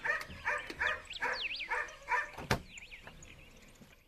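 Short animal calls repeated about twice a second, with high gliding chirps among them, fading out after about two seconds; one sharp click about two and a half seconds in.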